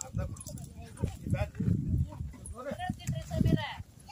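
Several people talking at once in the open, with a higher-pitched voice, likely a child's, rising and falling near the end.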